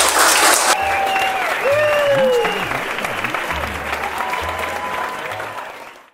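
Audience applause that cuts off abruptly under a second in, followed by quieter music with a few gliding tones that fades out near the end.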